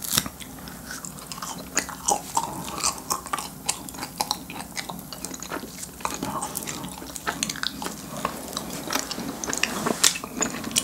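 Close-miked chewing and biting of a fish-shaped wafer filled with ice cream and red bean (bungeo ice cream), with soft crunches of the wafer shell and many small irregular mouth clicks.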